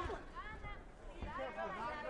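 Voices talking at a lower level than the commentary around them, with crowd chatter in the background; no distinct non-speech sound stands out.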